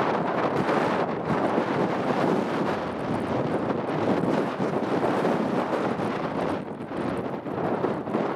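Wind buffeting the microphone: a rough, gusting rush that eases slightly near the end.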